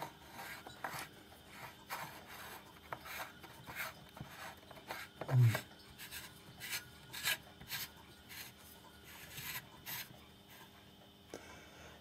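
Metal screw base of a large glass light bulb scraping and clicking against a lampholder as it is twisted, in short irregular rasps: the thread is not catching.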